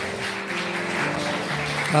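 Congregation applauding over soft background music with steady held notes.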